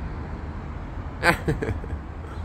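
Steady low rumble of road traffic, with a man's voice breaking in briefly just past a second in.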